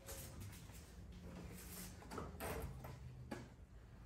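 Faint handling noises: a few soft clicks and scrapes of a pickup's plastic tail light housing being moved about after removal, over a low steady hum.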